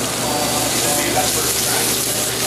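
Sable fish fillets, Chinese long beans and enoki mushrooms sizzling steadily in an oiled sauté pan over a gas flame.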